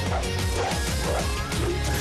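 Cartoon superhero transformation sequence: loud soundtrack music with a heavy bass, overlaid with hit effects and a short rising sweep.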